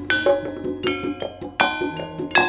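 Gamelan-style music of struck bronze gong-chimes and metallophones, notes struck about four times a second, each ringing on briefly.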